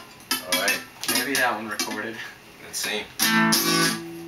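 Acoustic guitar being picked, then strummed chords ringing out loudly for the last second or so.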